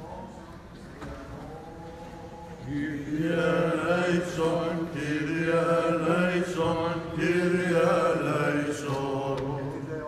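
Greek Orthodox liturgical chant sung by men's voices in long held notes, faint at first and becoming much louder about three seconds in.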